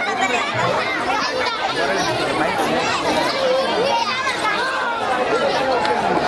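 Crowd chatter: many voices talking over one another in a steady babble.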